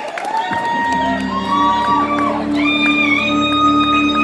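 A live country-rock band holds a low, sustained chord while the audience whistles and whoops.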